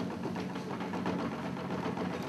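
A steady low hum, one pitch held throughout, under faint scattered ticks and room noise.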